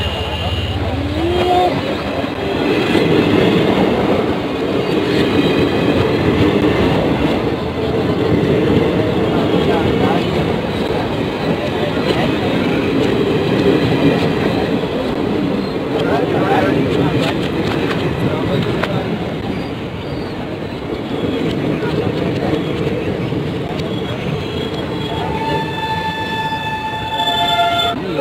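Indian Railways passenger coaches passing close by, a steady loud rumble and clatter of wheels on the track. A horn sounds, one steady held tone, for a couple of seconds near the end.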